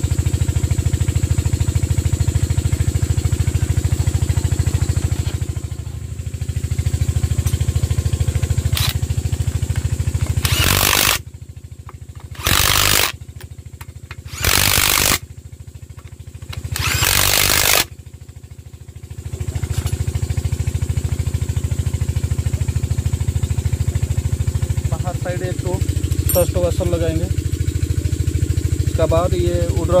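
Cordless power driver run in four short bursts of about a second each, between roughly ten and eighteen seconds in, driving bolts into the engine's crankcase. A steady low machine hum runs underneath.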